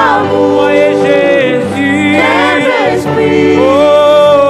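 Gospel worship singing through microphones: a woman's lead voice with several backing singers, holding long notes and gliding between them.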